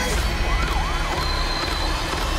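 Dramatic trailer sound mix: a heavy low rumble with a siren-like wailing tone that swoops up and down over it.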